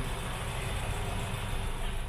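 Honda Civic Hybrid IMA engine idling: a steady low rumble.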